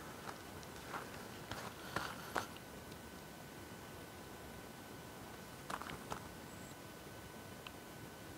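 Quiet outdoor background with a few faint, short clicks about one to two and a half seconds in and again near six seconds, over a faint steady high tone.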